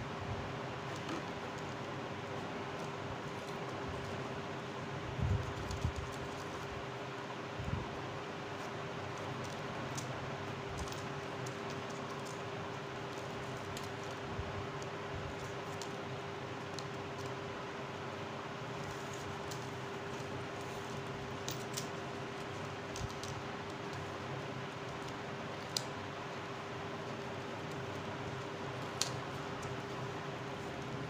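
Steady hiss with a constant low hum throughout. Over it come a few soft thumps and faint clicks of paper strips being handled and folded by hand, with a small cluster about five seconds in.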